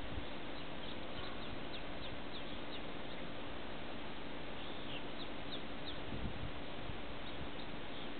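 Small birds chirping in the distance: short, high, downward-slurred chirps in a run about one to three seconds in, another around five to six seconds, and a couple near the end, over a steady background hiss.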